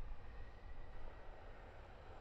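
Faint, uneven low rumble of a Boeing P-8 Poseidon's jet engines as the aircraft rolls along the runway, under a light steady hiss.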